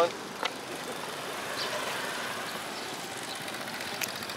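Steady roadside background noise of motorbikes and traffic, with a single short click about half a second in.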